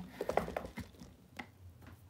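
Quiet handling noise: a few light, scattered taps and knocks with soft rustling as a large python is caught and lifted.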